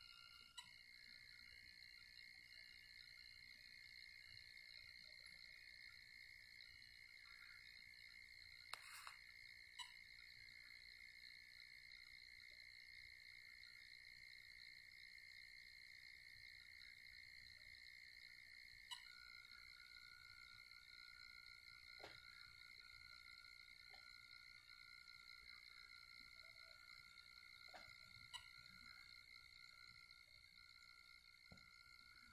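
Near silence with a faint steady high-pitched whine, one tone of which drops in pitch about two-thirds of the way through. A faint short beep comes about every nine seconds, four times in all, the DCC throttle signalling each new speed step of an automated locomotive speed-matching test.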